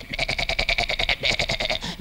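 A man imitating a ram's bleat with his voice: one long, quavering 'meeeh' with a fast tremble, breaking off near the end.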